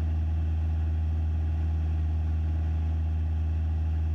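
Cessna 172SP's four-cylinder Lycoming IO-360 engine and propeller at steady cruise power, a constant low drone heard inside the cabin.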